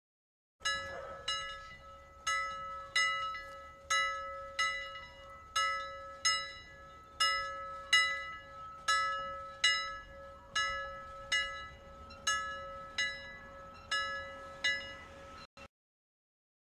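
Countdown timer's time-up alarm: a bell-like chime struck over and over, about once or twice a second, over a steady ringing tone, cutting off suddenly near the end.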